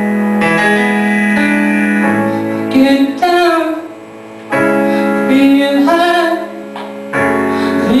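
Live rock-musical band music: sustained keyboard chords moving between held notes, with a singer's voice in places and a brief drop in volume about halfway through.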